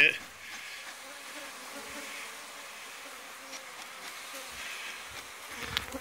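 Honey bee colony humming steadily at its nest entrance in a house's subfloor, a low even buzz with a faint pitch. The bees have just been smoked to calm them.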